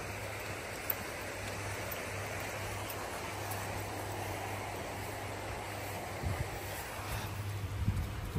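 Steady rush of churning water over a low, steady motor hum, as from a shrimp pond's paddlewheel aerator running.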